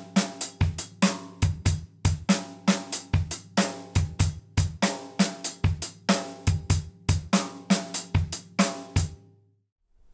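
Drum kit playing a shuffle: a swung long-short eighth-note-triplet groove of cymbal strokes over bass drum and snare. It stops cleanly about nine seconds in.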